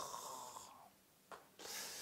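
A man's breathing in a pause between sentences: a soft breath trailing off at the start, then a short, hissy breath in near the end.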